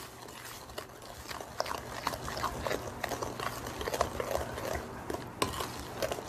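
Wooden spoon stirring sugar, oil and eggs together in a glass mixing bowl, with irregular light clicks of the spoon against the glass.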